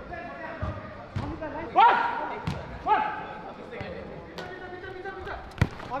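A football being kicked on an artificial-turf pitch: a handful of short, dull thuds spread a second or so apart, with players shouting to each other twice in between.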